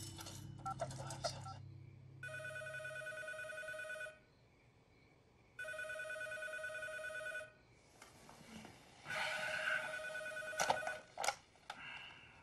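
Telephone ringing twice, each ring about two seconds long with a pause between, then a shorter third ring followed by a few sharp clicks.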